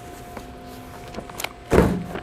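Loose papers handled and a stack of paper knocked down onto the binder's metal table near the end, a short thump over a faint steady hum.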